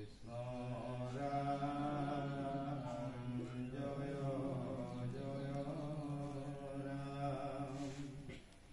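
Congregation chanting naam-prasanga, Assamese Vaishnava devotional chant, in unison. They hold long, steady, low notes with a short break and a change of pitch about three and a half seconds in, then stop at the end of the phrase.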